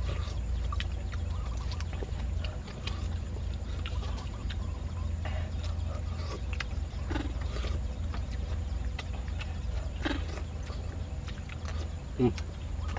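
A steady low rumble with scattered light clicks and a few short animal calls, about seven and ten seconds in.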